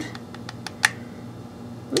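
A few light, scattered clicks from a hot glue gun being worked as glue is put onto a small wooden foot, over a faint steady low hum.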